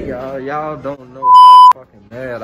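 A man's voice briefly, then a single loud, steady electronic beep about half a second long that cuts off sharply.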